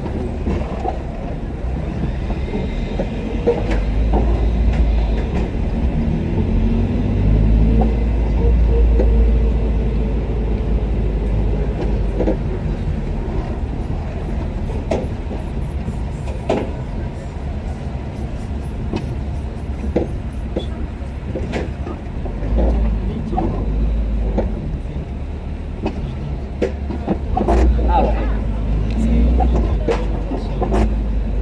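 Car driving slowly in city traffic: a steady low rumble of engine and road noise that swells and eases, with scattered short knocks. Indistinct voices sound faintly over it.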